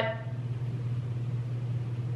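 A steady low hum with faint hiss in a room, in a short gap between spoken sentences.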